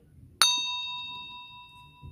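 A single bright bell ding, struck about half a second in and ringing out, fading over about a second and a half: a notification-bell sound effect of the kind laid over subscribe animations.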